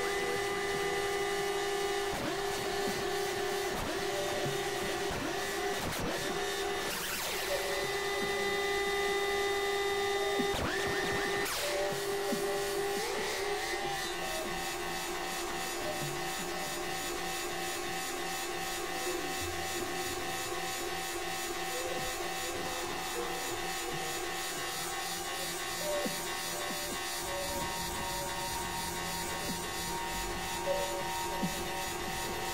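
Experimental electronic synthesizer drone music: layered steady held tones, crossed by a few brief noisy rising sweeps in the first half, and the texture shifts about halfway through.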